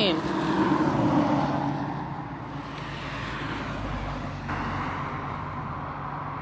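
Road traffic: a car passing by on the street, loudest about a second in and fading away over the next couple of seconds, over a steady low hum.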